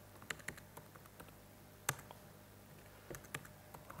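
Faint typing on a computer keyboard: scattered key clicks, with one sharper click about two seconds in.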